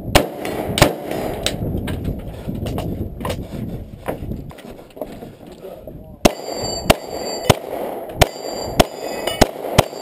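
Two rifle shots right at the start, then shuffling and handling noise with faint clicks. From about six seconds in, seven 9mm Glock pistol shots about two every second, several followed by steel targets ringing.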